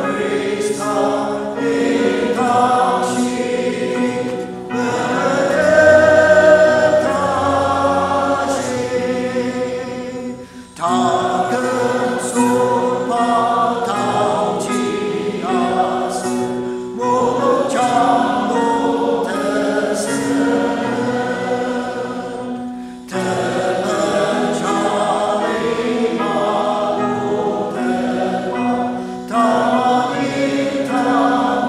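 A church congregation and choir singing a hymn together, with short breaks between lines about 10, 17 and 23 seconds in.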